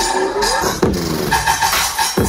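Electronic bass music from a festival sound system during a build-up, with synth glides: a rising sweep, then a steep falling sweep a little under a second in.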